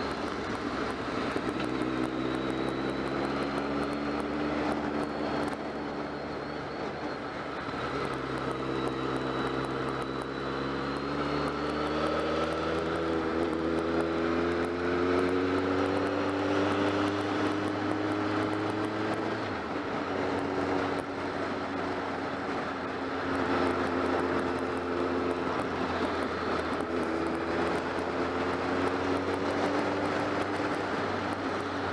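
BMW motorcycle engine running under way, with wind noise over the microphone. The engine note climbs steadily as the bike accelerates, drops suddenly with a gear change about two-thirds of the way through, then holds steady.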